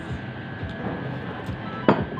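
Café ambience: soft background music over steady room noise. Near the end there is a single sharp knock, like a hard object set down on the table.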